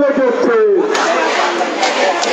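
Marching protest crowd shouting slogans in chorus, with long held and sliding voice tones.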